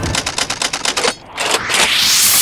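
Edited-in music and sound effects: a fast run of sharp, typewriter-like clicks for about the first second, then a rising whoosh of noise that builds to the end.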